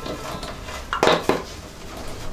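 Two sharp clacking knocks close together about a second in, from work on a wooden rug-tufting frame as tufting cloth is pressed and stretched onto its gripper strips.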